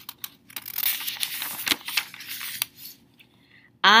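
A page of a thin paperback book being turned and pressed flat by hand: a paper rustle with small clicks lasting about two and a half seconds.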